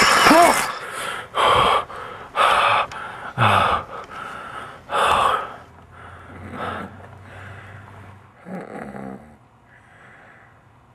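A man gasping for breath: a loud, sharp gasp at the start, then heavy breaths about a second apart that grow weaker after about five seconds.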